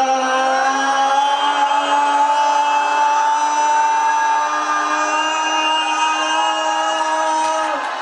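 A man's voice through a microphone holding the long drawn-out 'Yaaam' of a yam seng toast: one sustained shout, held steady and creeping up slightly in pitch, breaking off near the end.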